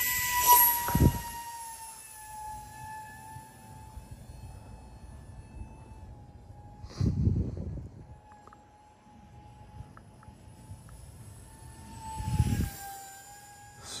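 Twin 30 mm electric ducted fans of an RC model plane whining at a steady high pitch in flight. The whine is loud at first, dips a little in pitch and fades as the plane flies off. A few short low rumbles come through, about a second in, halfway through and near the end.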